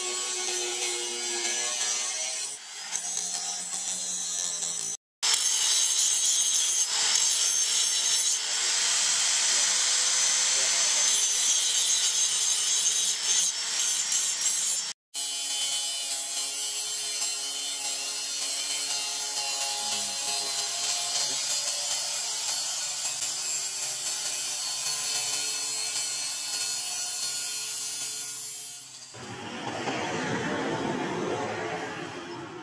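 Electric angle grinder with an abrasive disc grinding the steel edge of a motorcycle brake disc rotor: a steady motor whine under a harsh grinding hiss. It breaks off abruptly twice and is loudest in the middle stretch.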